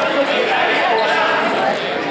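A basketball bouncing on a hardwood gym floor, with a sharp knock right at the start, over people talking in an echoing gym.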